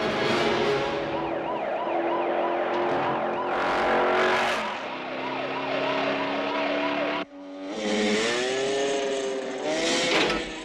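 Police car siren yelping in quick rising-and-falling cycles over engine noise. The sound drops out abruptly for a moment about seven seconds in, then returns with slower rising and falling tones.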